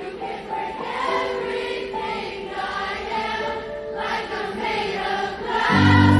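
A live concert crowd singing along to a slow song over held instrumental notes. Near the end, loud low bass notes come in and the music swells.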